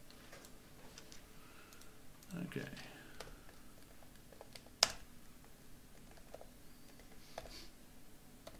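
Computer keyboard typing: scattered light key clicks, with one sharp, much louder click a little under five seconds in. A brief bit of low voice sounds about two and a half seconds in.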